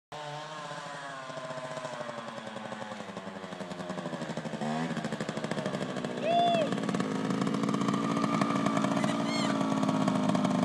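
Youth trials motorcycle running as it rides up a dirt trail and slows to a stop, its motor note rising and falling and growing louder as it approaches. A brief high pitched call sounds about six seconds in.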